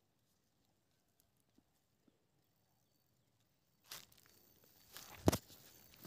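Near silence for about four seconds, then faint rustling noise with a few sharp clicks, the loudest about five seconds in.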